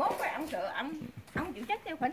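Voices talking in short, broken-up snatches.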